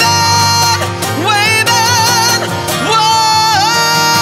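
A man singing long held high notes with vibrato over acoustic guitar: a held note to start, a wavering stretch, then another long held note from about three seconds in.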